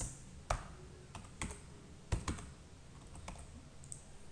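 Computer keyboard being typed slowly: about seven separate key clicks, unevenly spaced, as a terminal command is entered.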